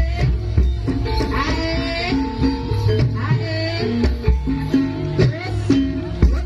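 Live ebeg accompaniment music: a Javanese gamelan-style ensemble playing continuously, with regular low drum strokes under held notes and a sliding, wavering melodic line.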